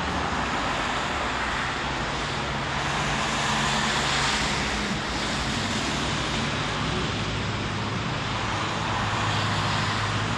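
Steady road traffic noise, with the low hum of passing car engines coming and going and swelling slightly a few times.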